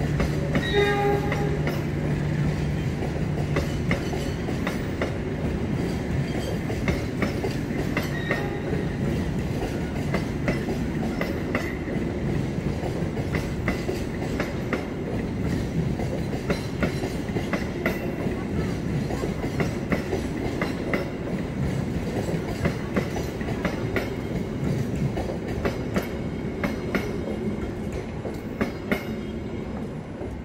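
Passenger train coaches running past close by, their wheels clicking over the rail joints in an irregular rapid series. A low steady hum is heard for the first few seconds, and the sound drops away just at the end as the last coach clears.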